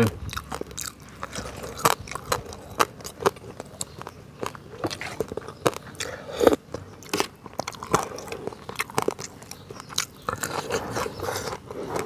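Close-miked eating: irregular crunching, biting and chewing, with a louder sip from a spoon of broth about six and a half seconds in.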